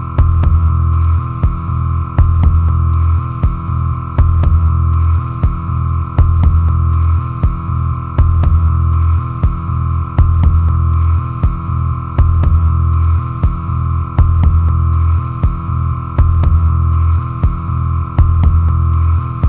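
Electronic drone soundtrack: a deep hum throbbing in pulses about once a second over a steady higher drone, with scattered sharp clicks.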